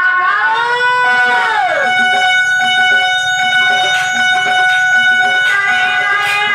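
Music on an electronic keyboard: a melody whose notes slide up and then fall away in the first two seconds, followed by long held notes.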